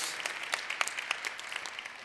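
Audience applauding, a dense patter of handclaps that eases off slightly toward the end.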